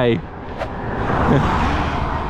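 A car passing a bicycle on the road, its tyre and engine noise swelling about a second in and easing off slightly, over low wind rumble on the microphone.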